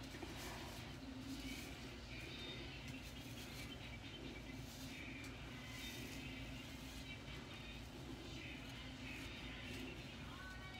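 Faint swishing strokes of a soft hairbrush brushing down the hair at the edges, over a steady low room hum.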